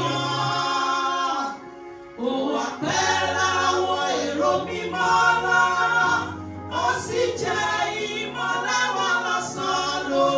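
Two women singing a gospel song into microphones, with low sustained notes held underneath the voices. The singing drops out briefly about a second and a half in, then resumes.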